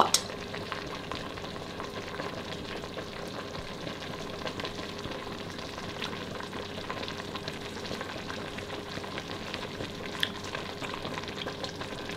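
A pot simmering on a gas stove: a steady, low crackling hiss with a faint steady hum underneath. A single short click sounds about ten seconds in.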